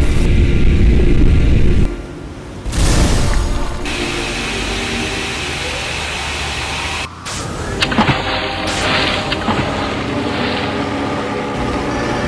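Battle sound effects laid over background music: a heavy explosion rumble that cuts off sharply about two seconds in, a short rushing burst a second later, then a steady rushing drone under the music.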